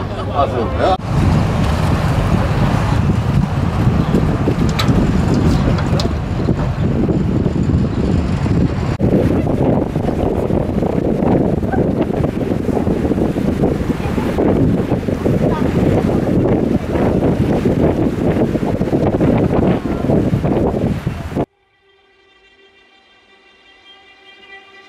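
Steady rumble of a boat's engine with wind on the microphone, heard from on board on the water. It cuts off abruptly near the end, and faint music follows.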